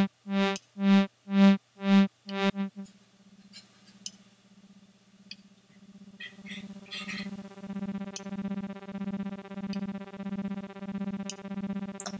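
Lyrebird software synthesizer (Reaktor) sounding a single buzzy note over and over, gated by an external clock about twice a second in short, evenly spaced hits. About three seconds in, the hits stop and the tone turns quiet and smooth. It then swells back slowly as a softer, gently pulsing drone, its shape now set by the gate rate and the attack and decay.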